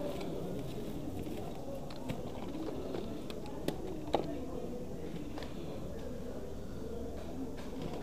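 Plastic odds and ends clicking and clacking a few times as a gloved hand rummages through a pile of old electronics and cables, over a steady murmur of voices.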